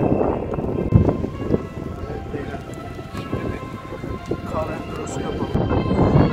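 Honda CBF 150 single-cylinder engine idling just after a cold start, with one thump about a second in. Background music comes in about halfway through.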